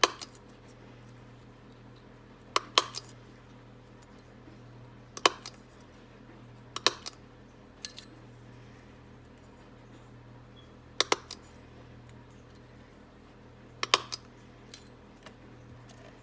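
Handheld single-hole paper punch snapping through glitter paper scraps to punch out small circles: sharp clicks every couple of seconds at an uneven pace, several coming in quick pairs.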